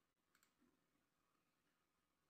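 Near silence, with a faint computer mouse click about half a second in.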